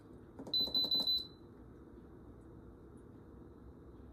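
Instant Pot electric pressure cooker's control panel beeping as its buttons are pressed: a quick run of short, high beeps about half a second in, lasting under a second, then only quiet room tone.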